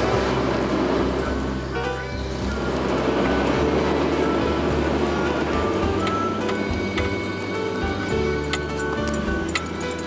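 Background music over the steady low hum of an Amphicar's water-cooled four-cylinder Triumph engine running as the car drives along.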